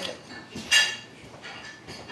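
A single short clink of tableware, a little under a second in, against quiet room sound.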